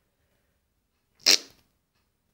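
A single short, sharp burst of noise a little over a second in, amid near silence.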